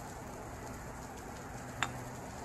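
Steady low outdoor background noise, with one sharp clink near the end as a glass olive oil bottle is set down on the table.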